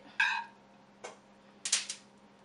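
A brief vocal sound just after the start, then a metal spoon scraping and clinking against a dish in a quick cluster of short rasps near the end.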